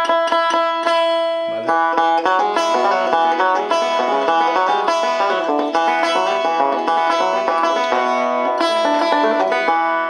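Long-neck five-string banjo, believed to be a Vega, played solo: a repeated picked figure with notes ringing on for about the first second and a half, then a run of changing chords and picked notes.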